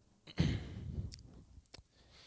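A man coughs once into a close microphone, the cough trailing off into a breathy exhale over about a second. A few short, faint clicks follow in the second half.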